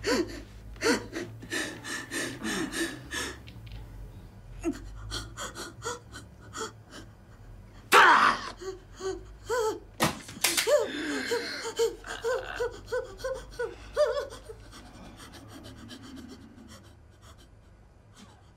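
A woman panting and gasping in pain, with a quick run of sharp breaths, a loud sudden cry about eight seconds in, then a string of short whimpering moans that fade near the end.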